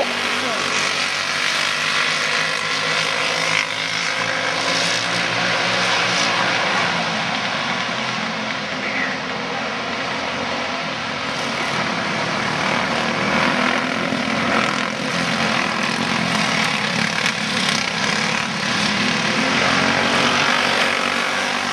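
Engines of several racing karts running hard at speed on a sprint track, a dense continuous buzz that swells and eases a little as the pack passes.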